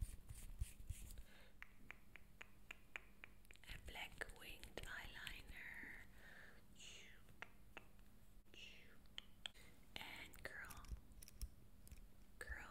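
Faint whispering close to the microphone, starting a few seconds in, over many soft clicks and taps from make-up items being handled.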